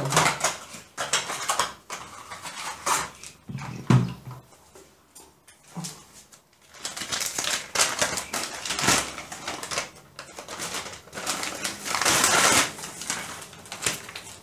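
Plastic packaging of a hair-bleach kit being handled: irregular rustling, crinkling and clicking, busiest in the second half.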